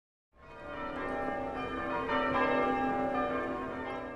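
Church bells ringing, many overlapping sustained tones, fading in just after the start.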